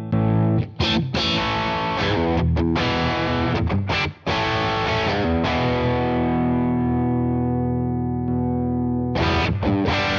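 Strat-style Suhr Classic S electric guitar played through channel 2 of a Wampler Pantheon Deluxe, the original Pantheon Bluesbreaker-style overdrive, giving gritty overdriven chords. Short chord phrases with brief breaks come first; one chord then rings out from about five and a half seconds to about nine seconds, before the playing picks up again.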